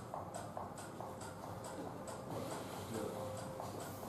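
Faint, regular ticking, about four ticks a second, over a steady low hum.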